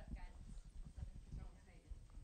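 Faint, muffled voices off-microphone, with irregular soft low thumps and bumps.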